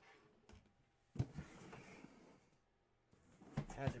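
A cardboard memorabilia box being handled on a desk: a sharp knock, then about a second of cardboard scraping and rubbing, with a few lighter knocks just before the end.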